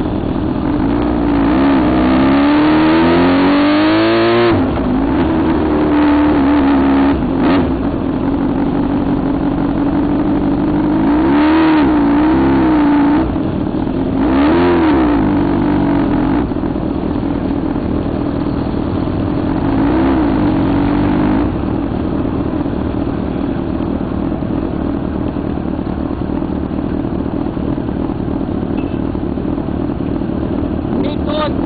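Motorcycle engines running, with a steady engine note and several rises and falls in revs: the busiest stretch is near the start, with two more around the middle, and a steadier drone after that.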